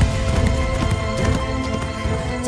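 Background music over the hoofbeats of a galloping horse.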